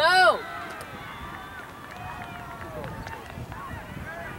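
A loud, high-pitched shout right at the start, then fainter shouts and calls from players and spectators across an outdoor soccer field.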